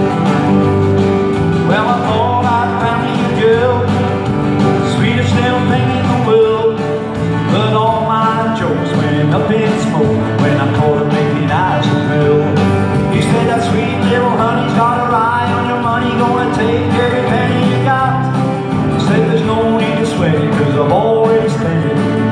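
Country music played live: a song with strummed acoustic guitar under a melody line, running steadily without a break.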